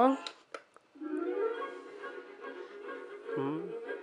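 A faint click of the song-select button, then built-in music starting about a second in from the small speaker of a Disney Frozen Cool Tunes toy boombox as it switches to a different song. The music holds a steady note and drops lower near the end.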